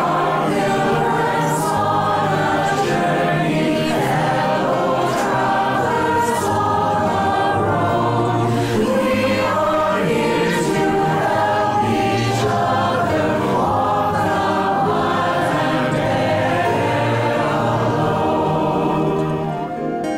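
Virtual choir of many separately recorded voices, mixed together, singing a song over an instrumental accompaniment track with steady low bass notes.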